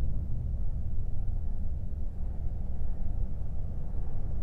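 Deep, steady rumbling drone of trailer sound design, low-pitched with no melody.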